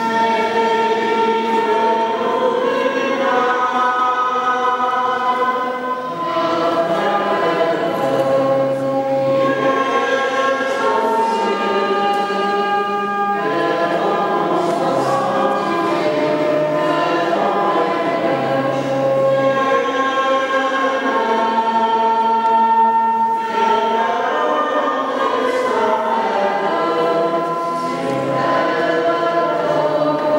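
A choir singing a slow hymn in long held notes that change every second or two, with low bass notes beneath.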